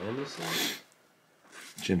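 A baseball card sliding off a stack against the next card, a short papery rasp about half a second in.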